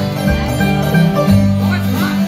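Live bluegrass band playing an instrumental passage: banjo, fiddles and mandolin over an upright bass that changes note every half second or so.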